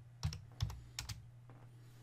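A few separate keystrokes on a computer keyboard, typing a short word, mostly in the first second.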